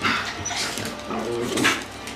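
Dogs at play giving a few short barks and yips, the loudest near the end.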